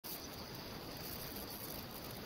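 Low, steady hiss with a faint steady high-pitched whine: the background noise of a lecture recording.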